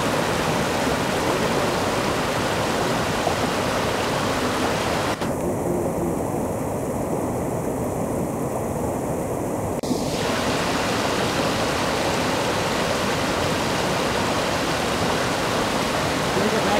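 Rocky mountain river rushing over boulders and stones, a steady full hiss of white water. About five seconds in the sound turns duller for around five seconds, with a click where it starts and where it ends.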